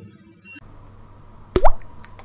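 Sound effect of an animated logo outro: a single sharp pop with a quick rising swoop about one and a half seconds in, after a short quiet lull.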